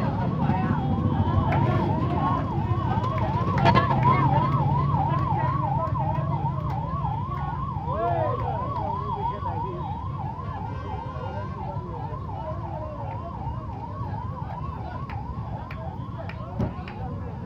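Emergency vehicle siren sounding a fast up-and-down wail, about two sweeps a second, gradually fading toward the end over street noise.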